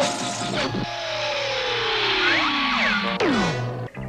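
Cartoon sound effects for characters sliding down an ice chute: a long tone that falls steadily in pitch over a hiss, with a few short rising and falling chirps partway through. A second, quicker falling swoop comes near the end.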